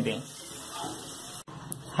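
Watery halwa mixture bubbling and sizzling in a hot nonstick pan over a low flame, a steady hiss with a wooden spatula stirring through it. The sound drops out for an instant about one and a half seconds in.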